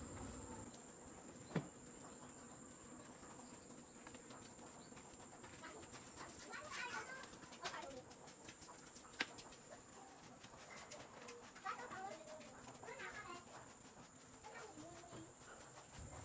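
Quiet outdoor background: a thin, steady high insect drone, with a few faint distant calls now and then and two sharp clicks, one about a second and a half in and one about nine seconds in.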